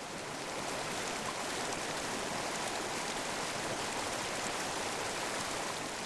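Steady rushing of running water, like a stream, growing louder over the first second and then holding even.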